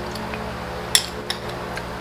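A few short clicks of a metal spoon and utensils while eating, the loudest about a second in, over a faint steady hum.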